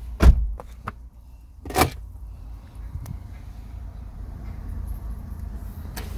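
Two heavy slams of car doors being shut, about a second and a half apart, heard from inside the car, with a few lighter knocks between. A low steady rumble follows.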